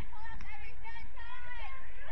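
High-pitched voices shouting and calling out across an outdoor soccer field during play, over a steady low rumble.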